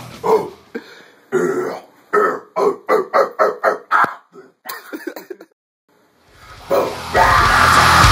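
A man's guttural, growled metal vocals with no backing music: a quick rhythmic run of short bursts, about three or four a second. Near the end the heavy metal music comes back in.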